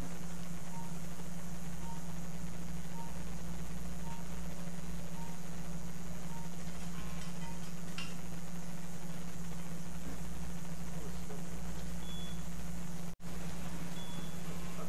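Operating-room background: a steady electrical hum with a short electronic beep repeating about every two-thirds of a second, the beeps stopping about six seconds in. The sound cuts out completely for a moment near the end.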